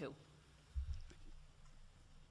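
A single short, low thump about a second in against quiet room tone, after the tail of a spoken word at the very start.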